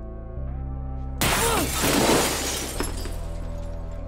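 A sudden crash of breaking glass about a second in, with the shards ringing and settling for about a second and a half. Low sustained film-score music plays underneath throughout.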